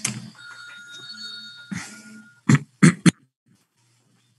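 A steady high electronic tone lasting about two seconds, heard through a video call, followed by three short loud bursts.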